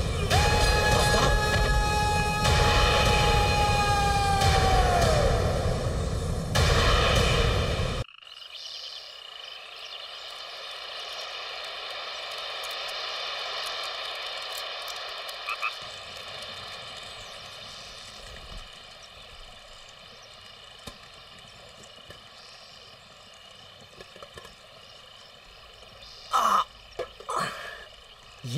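A loud, long held note over a dense din for about eight seconds, ending in a sudden cut. Then a quiet outdoor stillness with a few steady high tones, with short voice sounds near the end.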